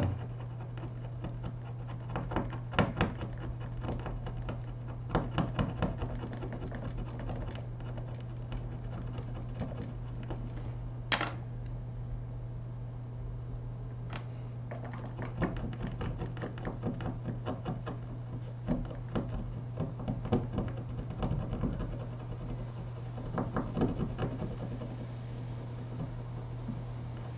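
A plastic pry tool scraping and clicking against a laptop screen's bezel strip on a wooden bench, in short irregular bursts of small clicks. There is one sharper click about eleven seconds in. A steady low hum lies underneath.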